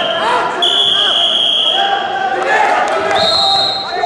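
A referee's whistle is blown in a sports hall over crowd chatter. A long steady blast starts about half a second in and lasts over a second, then a shorter, higher-pitched blast comes near the end.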